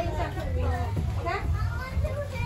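Young children's voices chattering and calling out, over a low steady hum.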